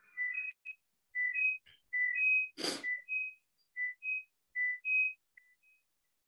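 Whistling: about a dozen short notes alternating between a lower and a higher pitch, with one brief burst of noise a little before halfway.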